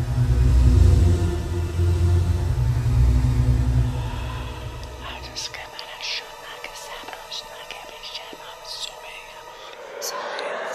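A deep, low drone from the trailer's score fills the first half, then fades out. It gives way to breathy whispering, with short hissing sibilants and no clear words.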